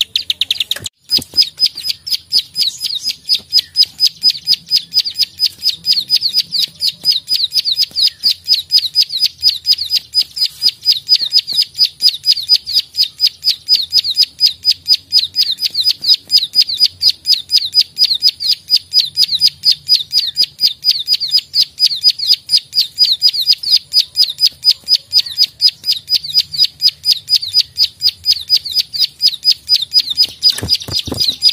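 Plain prinia (prenjak sawah) giving its sharp 'klik-klik' call in a rapid, evenly repeated, unbroken series of high notes, which begins after a brief pause about a second in. It is a bird in combative ('narung') mood.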